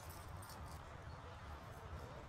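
Faint background sound of a large show arena: a low steady rumble with a few soft ticks.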